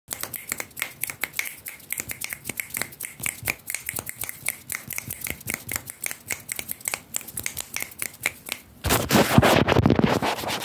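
Rapid, sharp finger snaps and clicks, several a second, made close to the microphone. Near the end they give way to a louder scratchy rustle of sweatshirt fabric rubbed directly against the microphone.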